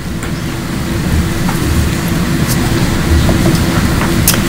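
Steady low rumble with a constant hum beneath it, the room's background noise such as ventilation, with a few faint ticks.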